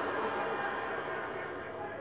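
Audience laughing after a punchline, a steady wash of crowd noise that fades slightly toward the end.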